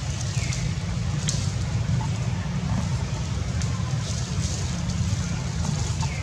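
Steady low rumble of wind on the microphone, with a faint high call falling in pitch just after the start.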